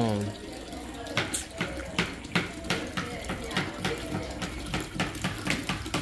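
Raw whole chickens being cut into pieces with a kitchen knife: a quick run of short, wet clicks and cracks, about three to four a second, starting about a second in.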